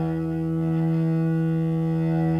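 Music: a distorted electric guitar chord held and ringing steadily.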